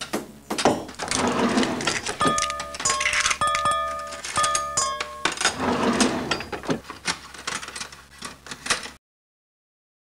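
Clattering knocks and rattles, with a few short steady tones sounding in the middle. It cuts to silence about nine seconds in.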